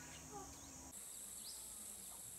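Faint, steady high-pitched drone of insects, shifting a little higher about a second in.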